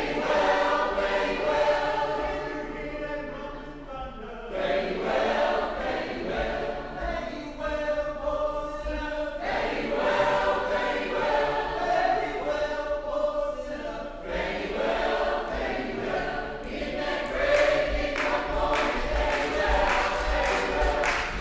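A choir singing, in phrases of held chords with short breaks between them.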